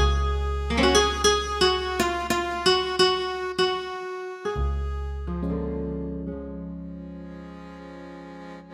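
Roland V-Accordion, a digital chromatic button accordion, playing a melody of short notes, about three a second, each dying away quickly, over a long held bass note. About halfway through it moves to a held chord over a new bass note that slowly fades.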